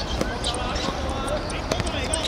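A football kicked on a hard outdoor court: a sharp thud of a strike just after the start and another near the end, amid players' shouts.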